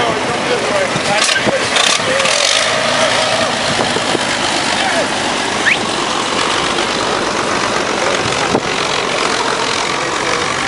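Antique car engine running as an early open car drives slowly past.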